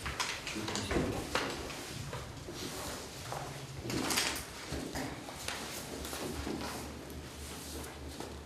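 Quiet handling noises at a table: papers rustling and small knocks and scrapes, with a louder rustle about halfway through, over a faint steady low hum.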